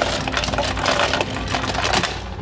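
Ice cubes clattering out of a Lancer soda-fountain ice dispenser into a foam cup: a rapid, continuous rattle of hard little clicks.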